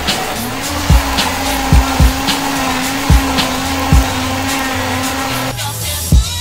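Countertop blender motor running steadily while blending a drink: it spins up just after the start and cuts off shortly before the end. Background music with a steady beat plays throughout.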